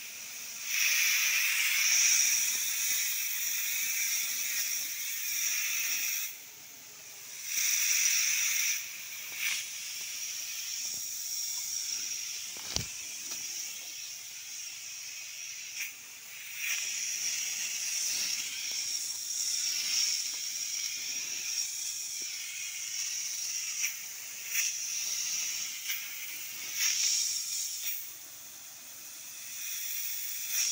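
High-pressure spray lance on a hose hissing as it throws a fine mist onto fruit trees. It breaks off briefly a few times as the trigger is released, most clearly about six seconds in and near the end.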